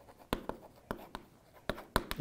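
Writing on a green chalkboard: a handful of short, sharp taps and scratches as Korean characters are written, each stroke a separate click with quiet between.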